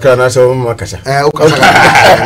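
A man talking in a wavering, drawn-out voice, giving way to laughter from the men around the table about halfway through.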